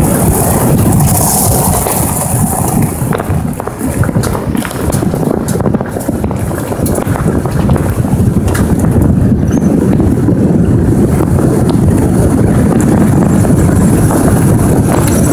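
Wind buffeting the microphone over the steady rumble of a vehicle moving along a paved road, with scattered small knocks and rattles.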